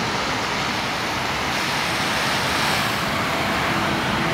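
Steady traffic noise from a busy city street: an even wash of engine and tyre noise from many passing vehicles, with no single vehicle standing out. It is loud enough that the speaker says he can hardly hear himself.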